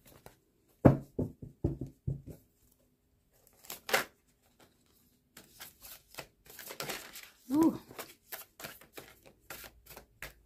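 Tarot cards being handled and laid down on a cloth: a run of short taps and slaps about a second in, a sharper one near four seconds, then sliding and rustling through the second half.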